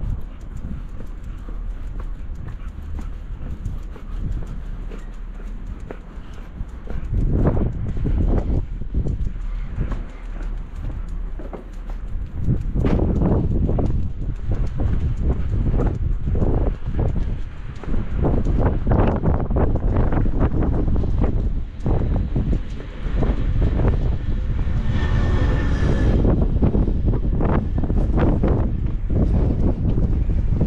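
Footsteps of a person walking on a tarmac alley, a steady run of short steps, under wind rumbling on the microphone that grows louder about halfway through.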